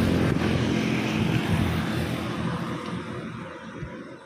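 Road noise from a vehicle passing close by, loud at first and fading away over the second half.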